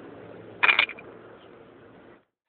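A brief 'ding' about half a second in: a quick cluster of three or four ringing strokes, over a steady background hiss.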